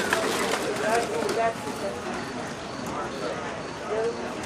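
Hoofbeats of a Dutch Harness Horse trotting on a dirt track while pulling a show cart, with voices talking in the background.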